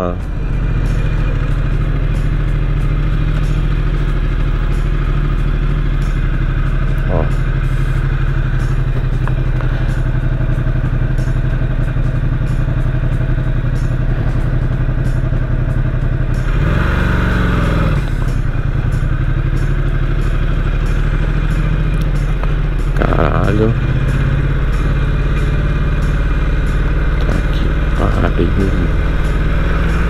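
Ducati XDiavel S's Testastretta V-twin running steadily at low city speed. Its pitch briefly shifts, dipping and recovering, a little past the middle.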